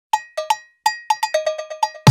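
Cowbell struck in a syncopated pattern at two pitches, the hits coming closer together toward the end: the solo cowbell intro of a pop song's backing track.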